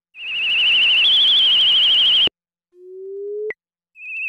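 WS-101 software synthesizer playing its 'whistle' preset: a high warbling whistle tone over breathy hiss that steps up in pitch about a second in and stops after about two seconds. After a short gap a lower tone rises slowly and ends in a quick upward sweep.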